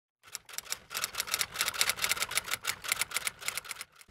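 Typing: a fast, uneven run of crisp key clicks that stops just before the end.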